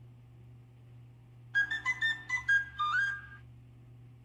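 A quick, high whistle-like melody of about a dozen short stepping notes with one brief upward slide, starting about a second and a half in and lasting about two seconds, over a low steady hum.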